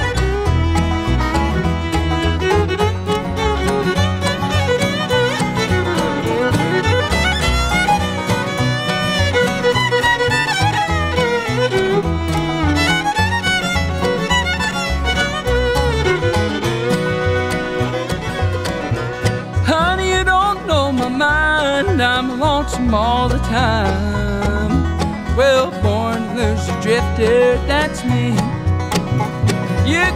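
Bluegrass band playing an instrumental opening: a fiddle leads the melody over banjo, mandolin, acoustic guitar and upright bass.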